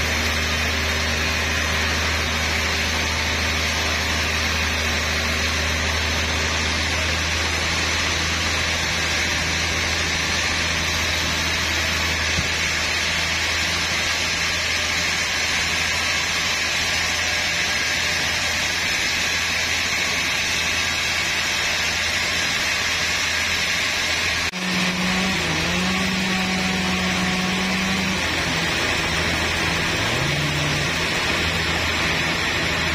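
Large Hatta Iron Works log band saw running steadily, its blade cutting lengthwise through a big trembesi (rain tree) log, with a deep machine hum beneath the hiss of the cut. About 24 seconds in the sound dips sharply for a moment and then carries on with a different, higher hum.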